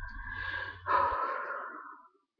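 A woman breathing out audibly: a softer breath first, then a longer, stronger exhalation starting about a second in that trails away. A low steady background hum cuts off partway through.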